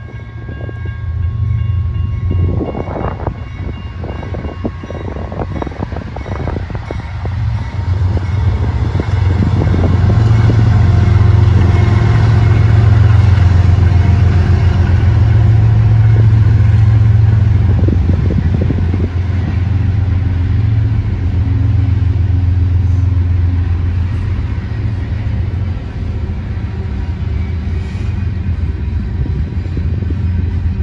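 BNSF freight train passing: the last of the diesel locomotive's horn fades out in the first second or two. The locomotives' low engine drone then builds to its loudest about ten to eighteen seconds in, over the steady rumble of the rolling freight cars, with sharp clicks in the first several seconds.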